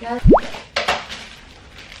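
A synthesized cartoon-style 'bloop' sound effect: one quick upward pitch sweep from deep to high, shortly after the start, one of a series recurring about every second and a half in the edit's background track. A brief rustle follows near the middle.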